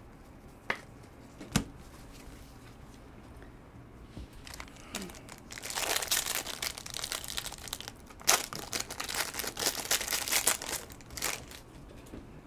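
A foil trading-card pack wrapper being torn open and crinkled: a dense run of sharp crackles lasting about six seconds, starting about halfway through. Two light taps come from handling cards near the start.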